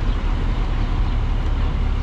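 Road traffic: cars and trucks passing on the road, a steady low rumble.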